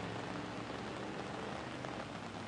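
Steady, even hiss of rain falling.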